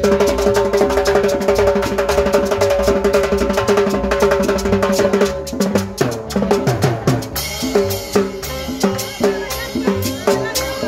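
Live dance music from a street band, led by a drum kit and percussion with a metal güira scraped in rhythm, over held notes from a pitched instrument. A few falling sliding notes come about six seconds in.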